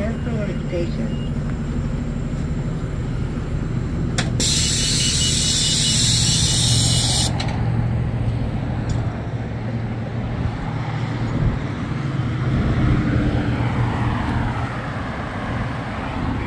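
The Cummins ISL inline-six diesel of a 2008 New Flyer D40LFR transit bus idling steadily close by. About four seconds in, a sharp click is followed by a loud hiss of compressed air from the bus's air system, which lasts about three seconds and cuts off suddenly.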